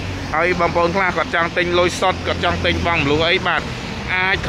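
A person speaking continuously, with a steady low hum underneath.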